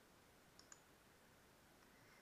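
Near silence with two faint computer mouse clicks a little over half a second in.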